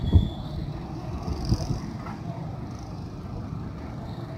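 Outdoor city ambience from high up: a low, uneven rumble of distant street traffic, with a low thump just after the start.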